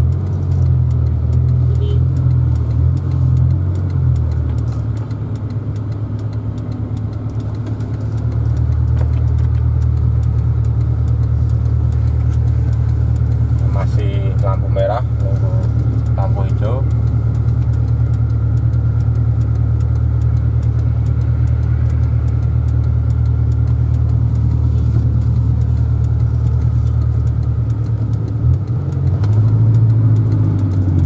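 Suzuki Escudo's engine, running on a 7Fire aftermarket CDI in stroker mode, heard from inside the cabin as a steady low drone. It eases off for a few seconds near the start, then settles back into an even, louder drone about eight seconds in.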